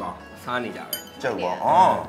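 A single bright clink of glass or ceramic tableware about a second in, over voices and background music; the loudest moment is a voice near the end.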